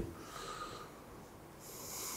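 A pause between speech: faint studio room tone, with a soft in-breath from a man near the end.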